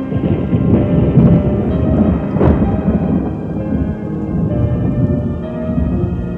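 Thunderstorm effect: rumbling thunder and rain with one sharp thunder crack about two and a half seconds in. It swells over sustained, dark keyboard chords in a synth intro.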